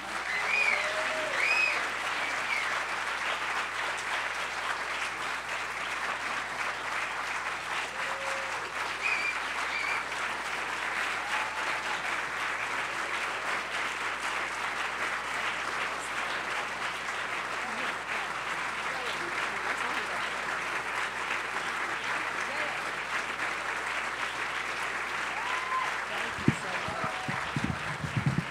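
Audience applauding steadily for a long stretch, starting sharply and holding an even level, with a few voices calling out over it, mostly near the start. Near the end, speech from the stage begins over the fading applause.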